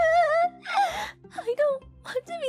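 A young woman's voice wailing in tears: a long drawn-out cry, then shorter broken sobs. Soft background music plays underneath.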